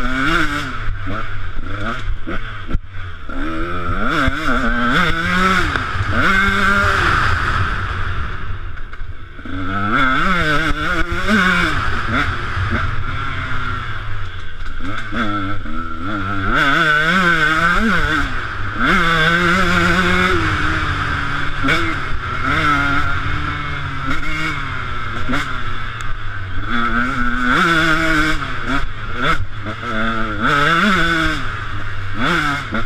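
KTM 125 SX single-cylinder two-stroke dirt bike engine revving hard, its pitch climbing and dropping again and again as the rider accelerates, shifts and backs off through tight trail turns.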